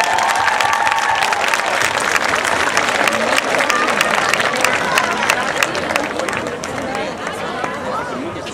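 Audience applauding, with shouts and cheering voices over the clapping; the applause thins out near the end.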